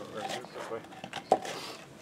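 Mostly a man's voice, with one sharp knock about a second and a third in as a piece of OSB board is handled on a small wooden workbench.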